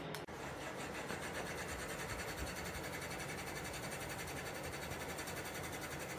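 Low-profile caged ceiling fan running: a steady whirring rush with a fast, even pulsing.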